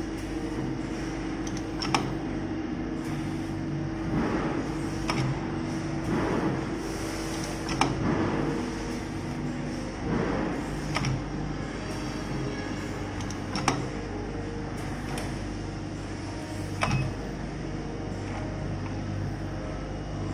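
Pneumatic pad printing machine cycling: a steady mechanical hum, with short air hisses and a few sharp clacks as the silicone pad moves up and down between the ink plate and the part.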